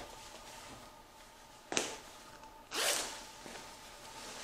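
The front closure of an olive-drab M69-style (3/4 collar) flak vest being undone as the vest is taken off. There is a sharp snap nearly two seconds in, then a short zipping rasp about a second later.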